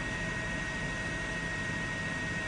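Steady helicopter noise, its engine and rotor running, with a thin steady high whine over the top.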